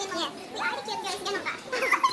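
Several high voices talking over one another in lively, overlapping chatter, with no one speaker clearly in front.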